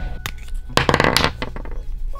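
Handling noise from a pair of leather boots being picked up and held: a few knocks, then a burst of rustling and scuffing about a second in.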